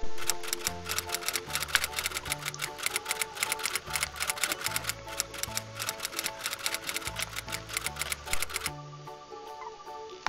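Typewriter key-clicking sound effect, a rapid run of clicks that stops near the end, over background music with a sustained bass line.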